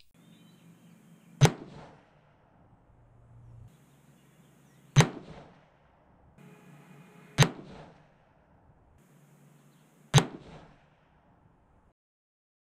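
Four rifle shots from a 6.5 Creedmoor Thompson Center Compass, fired a few seconds apart with handloaded 140-grain Nosler RDF bullets over Reloder 26 powder. Each is a sharp crack followed by a short ringing tail.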